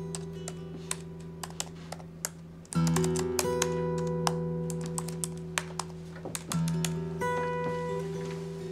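Computer keyboard typing, quick irregular key clicks, over background music of sustained chords that change about three seconds in and again near the end.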